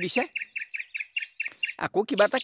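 A small bird chirping rapidly: a run of about ten short, high notes in a little over a second, between bursts of a man's voice.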